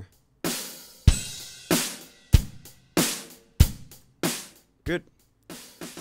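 Drum loop playing back in Reason: kick and snare alternating, about one hit every 0.6 s. The snare is layered with a Kong snare sample triggered from the snare track by a Pulverizer follower whose threshold is being adjusted. The beat stops near the end.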